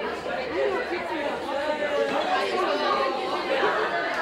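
Classroom of students chattering, several voices talking over one another at once.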